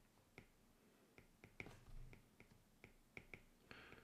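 Faint, irregular light ticks of a stylus tip tapping on a tablet's glass screen while a word is handwritten, roughly three or four a second.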